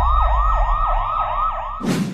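Emergency-vehicle siren sound effect: a fast yelping wail that sweeps up and down about four times a second over a low rumble. It stops suddenly near the end with a short swoosh.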